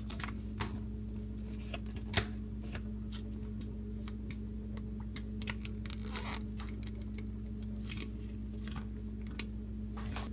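Plastic spout pouch of hair cream being opened and squeezed: a sharp plastic click about two seconds in, then soft crinkles and squelches as the cream is pressed out into a hand. A steady low hum runs underneath.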